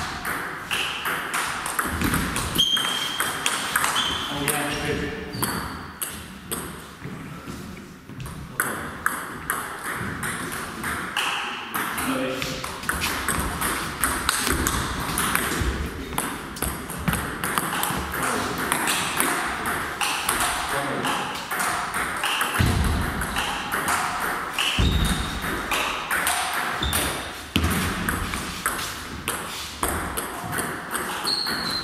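Table tennis balls clicking off bats and the table in quick rallies, the clicks coming thick and fast throughout, with short high squeaks in between.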